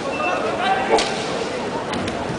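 Kendo shinai (bamboo sword) striking the fencers' armour or each other: one sharp crack about a second in, and a fainter clack near the end.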